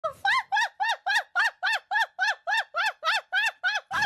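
A fast, even run of high, squawking laugh notes, about three or four a second, each note rising and then falling in pitch, played as a sound effect.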